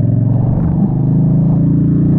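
Honda Shadow 750 Aero's V-twin engine running steadily at road speed, getting a little louder about a second in, with wind noise over it.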